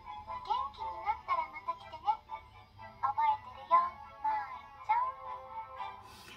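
Anime soundtrack: a high-pitched voice in short melodic phrases over background music.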